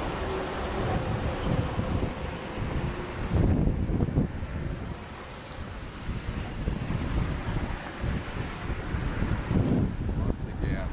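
Wind buffeting the microphone: an uneven low rumble that rises and falls.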